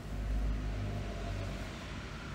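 A low rumble with a steady low hum that fades about a second and a half in, leaving faint hiss.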